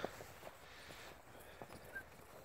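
Faint hoofbeats of horses walking on a soft dirt track: a few soft, irregular thuds.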